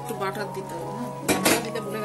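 Stainless steel pot lid lifted off an aluminium kadai. It clanks against the metal twice in quick succession just past halfway.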